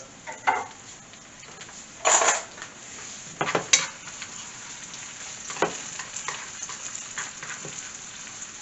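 Chopped onion, garlic, ginger, red pepper and cumin seeds sizzling steadily in hot oil in a nonstick skillet, while a silicone spatula stirs and scrapes them. A few sharper knocks cut through the sizzle, the loudest about two seconds in.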